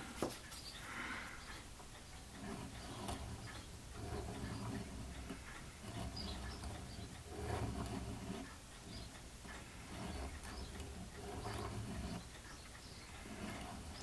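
Faint scratching strokes of a medium sanding stick rubbing across a tiny plastic model part held in a pin vise, roughly one stroke every second and a half. The sanding is taking down the rough burr left where the part was cut from the sprue.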